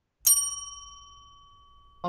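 A single bell-like ding, struck once about a quarter second in and ringing down over about a second and a half.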